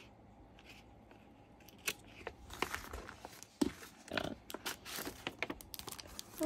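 Scissors cutting open a kraft paper envelope, then paper crinkling and rustling as the contents are pulled out: a quiet start, then from about two seconds in a busy run of irregular snips and crackles.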